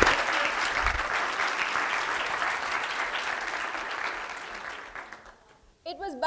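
Audience applauding, many hands clapping at once, loudest at the start and dying away over about five seconds.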